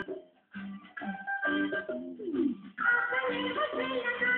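Recorded music played through a home stereo's Sony loudspeaker, with short breaks between phrases at first and a fuller, busier passage coming in about three seconds in.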